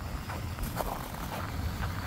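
Low steady rumble of an idling diesel engine, with a few faint crunching footsteps in snow.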